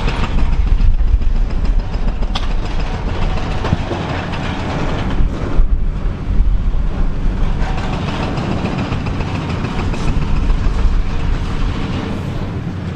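Concrete rubble and steel falling and crashing down through a partly demolished concrete silo building, a continuous heavy rumble with sharp cracks now and then, mixed with the running diesel engine of a high-reach demolition excavator.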